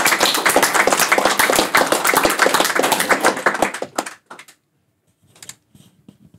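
A small audience applauding, many separate claps at once, dying away about four seconds in. A few faint knocks follow.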